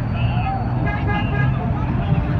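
Busy street traffic, with the steady low rumble of idling and crawling engines from minibus taxis, lorries and motorcycles, and a short horn toot about a second in.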